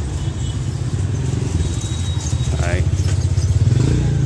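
Motor scooter engine running close by, growing louder as it approaches up the lane.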